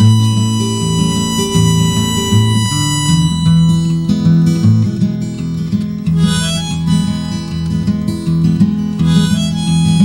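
Harmonica played in a neck rack over a strummed acoustic guitar: an instrumental passage of a folk song, with chords changing under the harmonica's melody.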